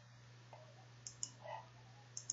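Two quiet computer mouse-button clicks about a second in, a fraction of a second apart, over a faint steady hum.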